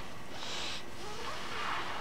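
A person breathing audibly while practising circular breathing: a short, sharp breath about half a second in and a softer, lower breath near the end.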